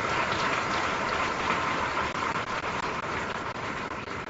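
A large audience applauding in a big hall: dense, even clapping that eases off a little toward the end.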